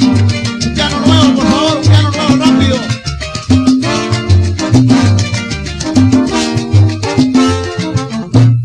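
Live salsa band music with a pulsing bass line, steady percussion and piano.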